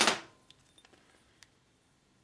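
The tail of a spoken word, then a few faint, light clicks of small metal parts being handled on a workbench, over quiet room tone.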